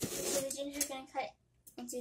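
A woman's voice speaking in short phrases, with a kitchen knife cutting through a fresh ginger root onto a wooden cutting board.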